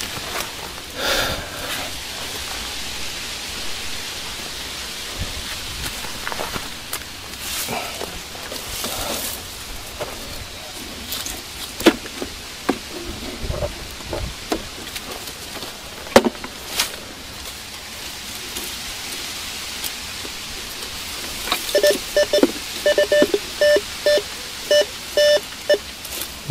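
Scattered knocks and scrapes over a steady hiss while working the freshly dug hole. Near the end, a metal detector sounds a run of short repeated beeps over a target, signalling metal in the ground just below the hole.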